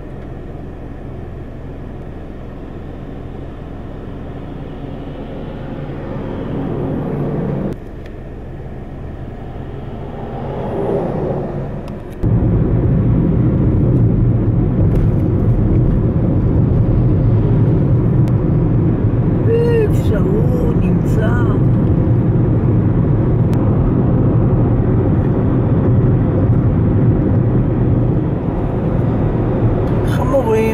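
Car cabin road and engine noise while driving at highway speed, heard from inside the car. A swell rises about ten seconds in as an oncoming lorry passes, and about twelve seconds in the rumble jumps louder and rougher and stays so.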